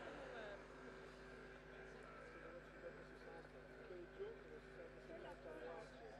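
Near silence: a faint steady hum with faint, indistinct voices in the background.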